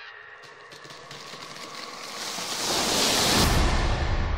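Trailer sound-design riser: a rushing noise swells louder over about two seconds, with a deep rumble coming in past the middle as it peaks.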